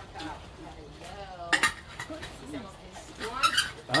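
Voices talking in the background, with a sharp clink about a second and a half in and a quick run of clinks and knocks near the end.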